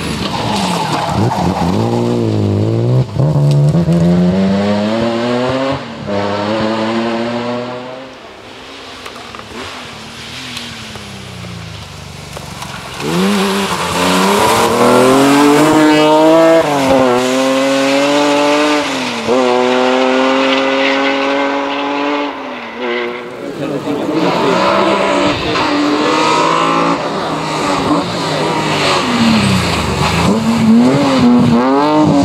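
BMW E36 Compact rally car with an M3 straight-six engine accelerating hard on several passes, revving up through the gears with a sudden drop in pitch at each gear change. The engine is quieter for a few seconds near the middle, then revs high again.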